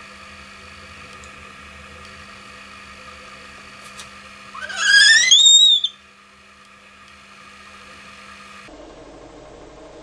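A girl's short, high-pitched squeal that rises in pitch, lasting about a second and a half, about five seconds in. It is set against a faint steady room hum.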